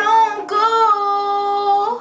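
A woman singing long held notes: a short phrase, then one long sustained note from about half a second in until just before the end.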